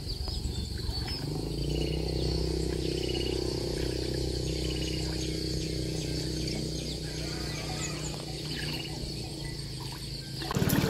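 Small long-tail boat motor running at a steady pace as the boat moves off across the water, easing somewhat near the end. Faint bird chirps repeat above it.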